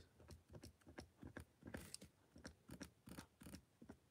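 Faint, irregular taps of a gold chrome marker pen's tip dabbing dots onto a journal page, about four a second.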